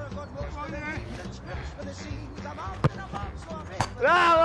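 Two sharp thumps of a football being struck, about a second apart, near the end, over background music and faint voices.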